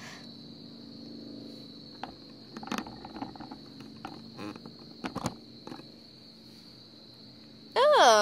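Steady high-pitched insect chirring, likely crickets, in the background. A low hum sits under the first two seconds, and light scattered taps and rustles of plush toys being handled on pavement fall between about two and six seconds in.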